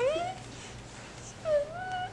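Mini Whoodle puppy whimpering: two short, rising whines, one at the start and one about a second and a half in.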